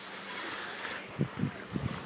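Kayak paddle working the water: a swishing splash for about a second, then a few soft low knocks.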